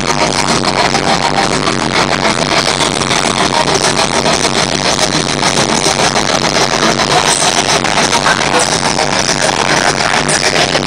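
Live heavy metal at concert volume: a rock drum kit played fast and hard through the arena PA, with dense, continuous drumming throughout.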